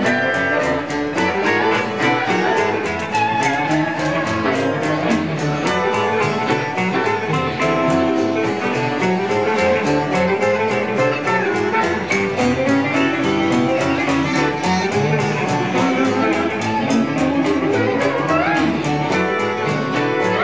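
Live country band playing an instrumental passage without vocals: guitar over upright bass, with a steady, quick beat.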